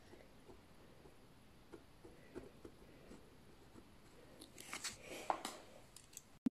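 Pen scratching short hatching strokes on squared paper, a faint tick with each stroke. Near the end come a few louder rustles and knocks from handling.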